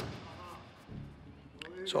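Quiet background sound with a short click at the start and a few dull low thuds about a second in, before a man's voice begins at the very end.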